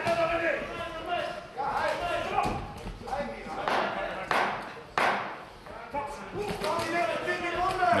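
Men's voices calling out around a boxing ring in a large, echoing hall, with three sharp thuds about four to five seconds in.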